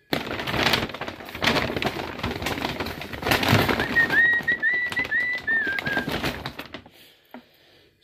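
Crackly rustling and handling noise with many small clicks that stops about a second before the end. A run of short, high chirping notes sounds around the middle.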